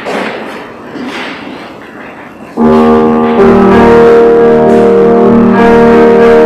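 Grand piano starts playing about two and a half seconds in with loud, sustained chords, after a short stretch of low room noise.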